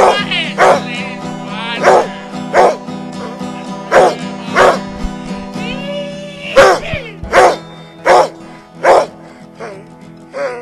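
A dog barking over music, with short sharp barks coming roughly every two-thirds of a second above a steady held chord. The barks thin out near the end.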